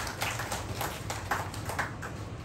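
Scattered hand clapping from an audience: a handful of irregular claps, several a second, with no steady rhythm.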